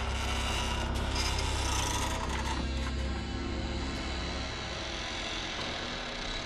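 Dramatic background score: a low, sustained drone with a thin scraping texture over it, easing off about two-thirds of the way through.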